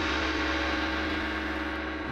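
A quiz-show sound cue: a single sustained gong-like ringing tone with many steady overtones and a deep hum beneath, fading gently and ending at about two seconds.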